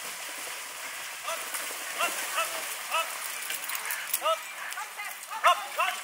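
A voice shouting short, high calls over and over, two or three a second and loudest near the end, urging on a pair of carriage horses, over a steady hiss of water splashing as the horses and carriage wade through a water obstacle.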